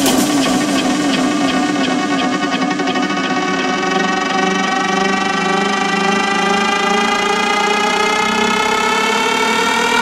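Electronic dance track in a build-up: the drum beat fades out over the first few seconds while a sustained synth tone with many overtones rises slowly and steadily in pitch. A wavering low synth note under it drops out near the end.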